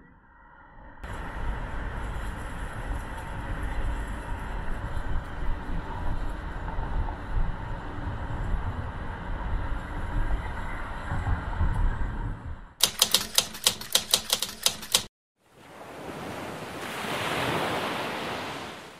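A low, steady rumble of city traffic noise. Near the end it gives way to a fast run of sharp clicks, about six a second for two seconds, and then a rush of noise that swells and fades away.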